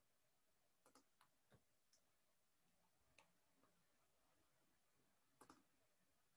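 Near silence: quiet room tone with a few faint, scattered clicks, a handful about a second in, one near the middle and a pair near the end.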